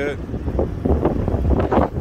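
Wind buffeting the phone microphone: an irregular low rumble that swells and drops in gusts.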